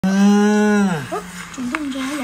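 A young child's voice holding one long, loud, steady note for about a second, dropping in pitch as it ends, then a few quieter short voice sounds.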